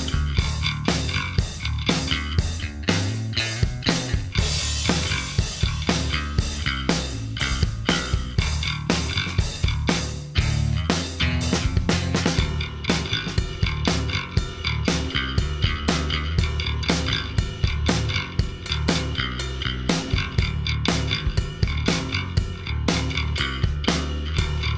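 Line 6 Variax modelling bass guitar played through its 1978 Alembic long-scale model, a run of picked bass notes. It plays over a backing track with a steady beat of about four hits a second.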